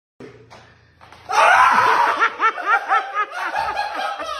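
A person bursting into laughter about a second in: a rapid run of "ha-ha" pulses, about five a second, loud at first and easing off near the end.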